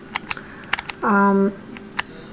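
Several sharp, irregularly spaced light clicks. About a second in, a voice holds a steady 'uh' for half a second.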